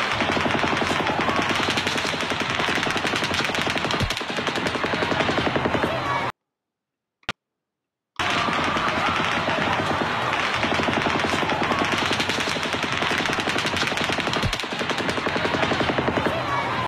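Rapid, sustained automatic gunfire from a cell-phone recording of a mass shooting, a dense run of shots that plays for about six seconds, stops, then plays again after a two-second gap. The firing has a shifting rhythm, which the narrator takes for two different guns firing at once.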